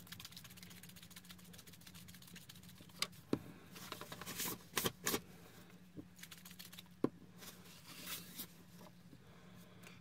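Faint handling sounds on a craft table: small objects such as a plastic spray bottle and scissors being set down and picked up, giving a few light clicks and knocks, mostly in the middle, with brief paper rustling, over a faint steady hum.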